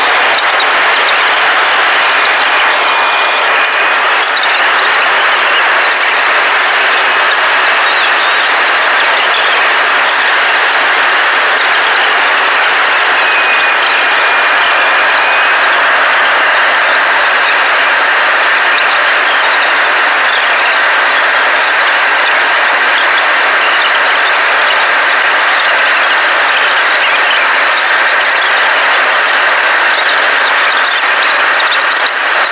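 Airliner cabin noise at a window seat: a loud, steady rush of jet engines and airflow during the descent. A faint high whistle comes twice.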